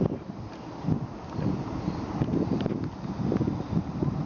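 Street traffic, cars and tyres passing in a low, uneven rumble, with wind buffeting the microphone.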